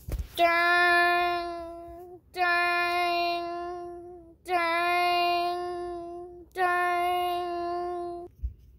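A child's voice singing four long held notes, all on the same pitch. Each lasts about two seconds and fades before the next one begins.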